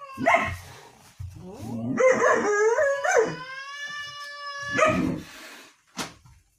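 A dog howling: a short yelp at the start, rising whines, then one long howl that holds a steady pitch from about two seconds in until nearly five seconds, cut off by a short harsh bark.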